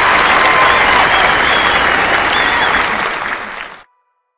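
Concert crowd applauding and cheering as the song ends, with a few high voices wavering above the clapping. It cuts off suddenly just before the end.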